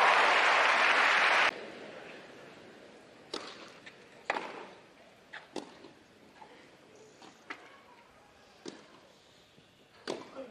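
Crowd applause on a tennis court, cut off abruptly about a second and a half in, followed by a rally on grass: sharp racket strikes on the ball about a second apart.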